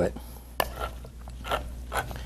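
Handheld manual can opener being worked around the rim of a metal can, with a few sharp clicks, one about half a second in and another near the end.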